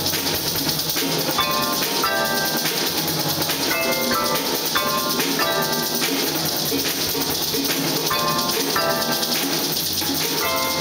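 A percussion ensemble playing: drums and hand percussion under mallet keyboard instruments that repeat a short pitched figure about every second and a quarter.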